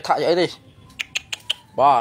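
A voice speaking, broken about a second in by a quick run of about five sharp clicks before the talk resumes.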